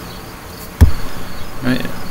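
A single sharp click with a low thump about halfway through, over a faint steady high-pitched tone, followed by a man's voice near the end.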